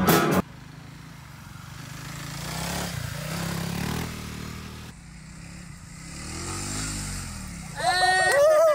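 Small dirt bike engine revving as it is ridden across grass, its pitch rising and falling, first from about two to four seconds in and again from about six to almost eight seconds in. A voice shouts near the end as the bike goes down.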